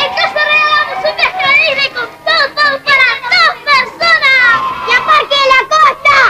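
A group of children's voices calling out and talking over one another, high-pitched and rising and falling.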